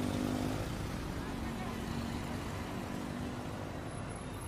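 Street traffic noise: a steady hum of vehicles on the road, with a faint low engine tone running through it.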